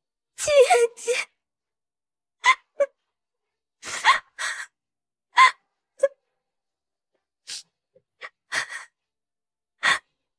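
A woman sobbing in grief: a drawn-out wavering cry near the start, then a string of short choked sobs and sharp gasping breaths with pauses between.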